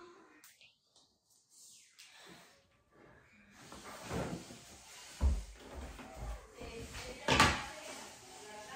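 Rustling and handling noise with a few knocks. The sharpest knock comes about seven seconds in, after a quiet start.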